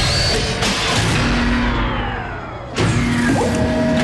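Cartoon soundtrack of sound effects over music: a long noisy blast with several tones sliding down in pitch, then a second sudden blast a little under three seconds in.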